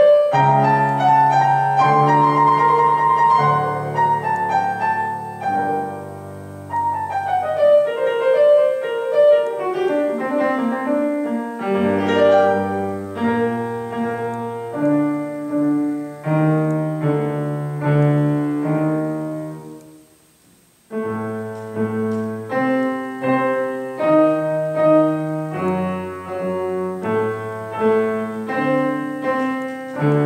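Two pianos playing a classical piece together, a Yamaha grand and an upright. About two-thirds of the way through the music slows and dies away to a brief silence, then starts again.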